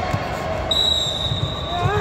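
Players' feet thudding on the foam mats of an indoor kabaddi court as a raider is closed in on and tackled. A steady high-pitched whine joins about a third of the way in.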